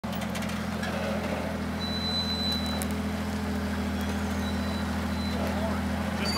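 Modified Jeep Wrangler YJ rock crawler's engine running steadily at low revs, with no revving.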